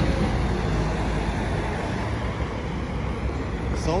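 Steady street traffic noise from cars on a city road.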